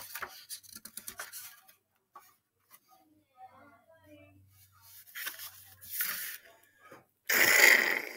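Pages of a hardcover picture book being handled and turned: light paper rustles and clicks, then a louder paper swish near the end as a page flips over.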